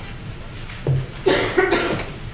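A person coughing: two coughs in quick succession past the middle, after a short lighter sound.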